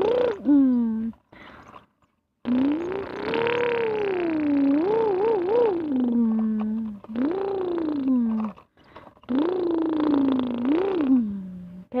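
A person's voice making engine noises for a toy bulldozer pushed by hand: long hummed notes that rise and fall in pitch, in three main stretches with short breaks.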